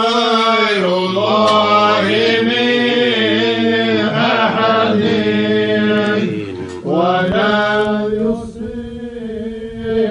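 Men's voices chanting an Islamic religious chant (dhikr), with long held, drawn-out notes over a low sustained tone. The chant breaks off briefly about seven seconds in, then goes on more quietly near the end.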